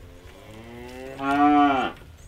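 A cow mooing: one long call that grows louder about a second in and drops in pitch as it ends.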